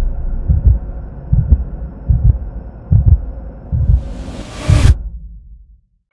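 Sound design for a studio logo animation: deep low thuds repeating about every three-quarters of a second, swelling into a whoosh near the end, then fading out.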